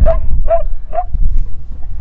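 A dog barking three times in quick succession, about half a second apart, with low wind rumble on the microphone.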